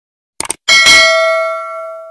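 Subscribe-button sound effect: a quick double mouse click, then a bell chime that rings out and fades over about a second and a half as the notification bell is clicked.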